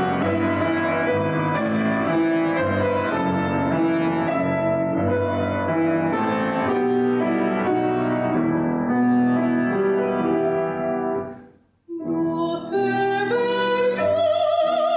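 Grand piano playing a solo passage. The notes fade to a brief silence about two-thirds of the way through, then the piano picks up again. Near the end a woman's singing voice enters with vibrato.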